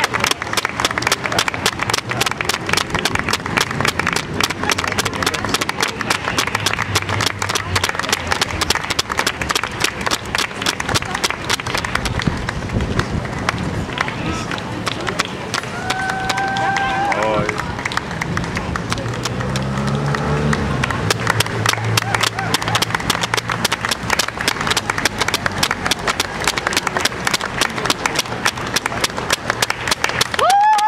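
Rapid, continuous patter of many runners' shoes striking the road as a dense pack passes, mixed with the voices of the crowd. A brief high-pitched note sounds about halfway through.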